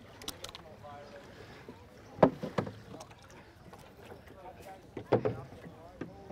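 A few sharp wooden knocks and clunks as oars are handled in the oarlocks of a small peapod rowboat. The loudest comes about two seconds in, with another cluster around five seconds, over a quiet background with faint voices.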